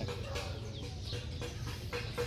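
Domestic fowl clucking quietly in the background.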